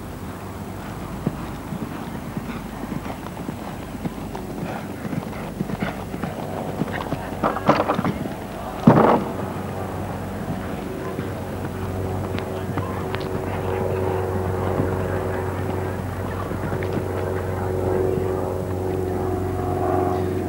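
Hoofbeats of a grey mare cantering on turf, a run of irregular soft thuds, with one short loud sound about nine seconds in.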